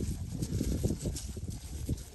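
Girolando heifers grazing close by on dry pasture: irregular soft crunches and thuds as they tear at the dry grass and shift their hooves on the hard ground.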